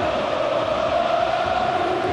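A crowd of voices chanting together in unison, holding a steady sung note, as football players and fans celebrate a win.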